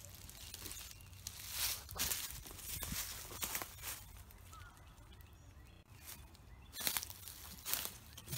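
Footsteps crunching through dry leaf litter and twigs, a handful of irregular steps around two seconds in and again near the end, with a quieter pause between.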